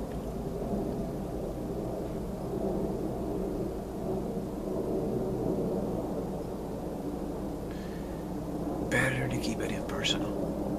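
A man's voice talking low and indistinctly, muffled, over a steady low hum, with a clearer burst of speech near the end.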